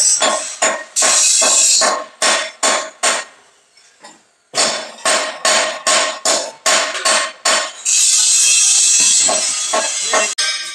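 Hammer blows on a steel concrete-mixer drum as its toothed ring gear is fitted, fast strikes about three a second, each with a metallic ring, with a pause of about a second near the middle. A steady loud hiss fills the first second and the last two seconds.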